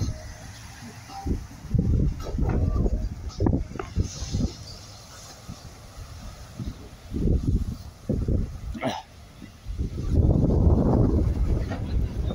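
Wind buffeting the microphone in irregular low gusts, with the longest, heaviest gust near the end.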